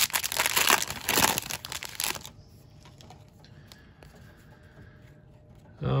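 Foil wrapper of a Panini Capstone baseball card pack being torn open and crinkled by hand, crackling until it stops about two seconds in.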